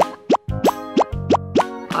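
A run of short rising 'bloop' sound effects, about three a second, over background music.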